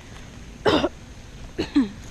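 A young man coughing twice, sharp and short, about a second apart; the second cough ends with a brief falling voiced sound. He puts the fits down to hiccups he keeps getting.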